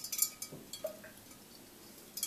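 A string of submersible wire fairy lights clinking against a glass vase as it is lowered into the water, a quick cluster of light knocks in the first half second with a brief glassy ring, then a few soft rustles.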